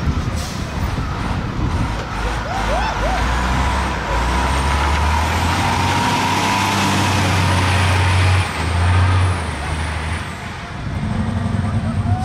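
MCI D4500 coach's diesel engine pulling away and driving close past, its low note building and growing louder, then easing off about ten seconds in. A high thin whine rises and holds over it while the coach passes.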